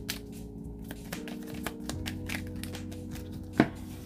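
Tarot cards being shuffled by hand: a run of light clicks and snaps, with one sharper snap about three and a half seconds in. Soft background music with long held notes plays underneath.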